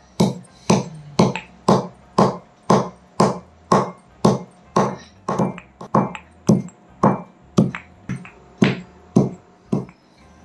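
Stone pestle pounding dry ginger in a granite mortar, with sharp strikes about two a second in a steady rhythm.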